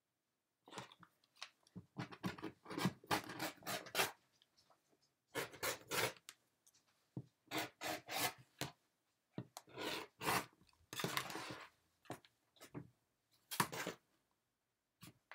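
A rotary cutter is drawn through a knit baby garment along an acrylic ruler on a cutting mat, in groups of short rasping strokes. The cut fabric is handled and pulled away near the end.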